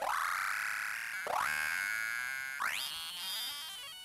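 Korg Volca Sample playing a pitched sample that swoops steeply up and then holds, three times about 1.3 seconds apart, each new swoop cutting in as the last fades; the third climbs higher than the first two.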